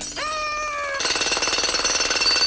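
Cartoon jackhammer sound effect: a whining tone that drops in pitch and holds, then about a second in a loud, rapid hammering as the chisel bit breaks into the ground.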